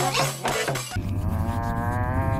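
About a second of toy one-man-band music, accordion with drum beats, cut off suddenly. It gives way to a long, low, moan-like tone that wavers slightly.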